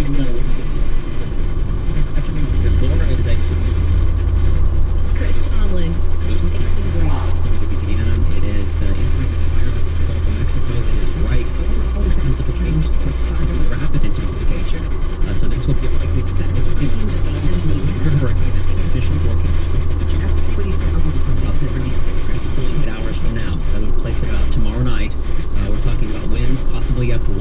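Radio news speech running throughout over a steady low drone.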